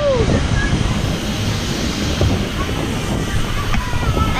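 Steady, loud wind buffeting the microphone of a camera riding on an open, fast-circling rocket ride.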